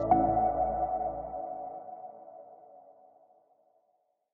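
Outro music sting: a single sustained electronic chord that sets in sharply and fades away over about three seconds.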